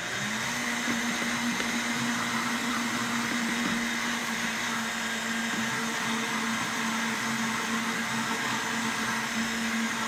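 Countertop blender blending a smoothie of greens, strawberries and coconut milk. Its motor climbs to high speed just at the start, then runs at a steady pitch throughout.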